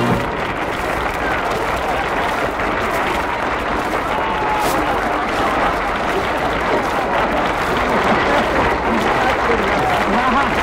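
Studio audience applauding steadily as a song finishes; the last held note cuts off right at the start.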